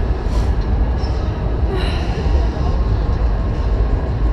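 Wind blowing on the microphone high up on an open fairground ride, a steady, uneven low rumble. A faint voice comes through briefly about two seconds in.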